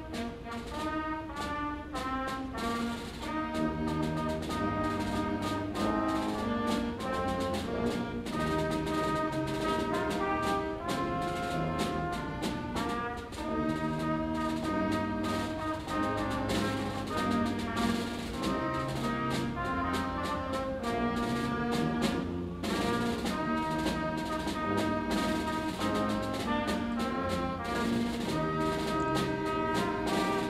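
Concert wind band playing, brass and woodwinds carrying the melody over tuba and a steady drum beat, with a brief lull about three-quarters of the way through.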